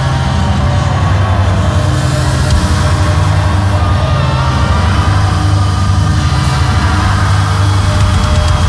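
Loud, heavy prog-rock music: a sustained low, distorted drone with long held notes above it.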